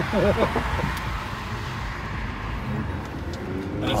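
Road and tyre noise inside the cabin of a moving Honda Accord Hybrid, opening with a brief laugh. Near the end a faint drive note begins to rise as the car picks up speed.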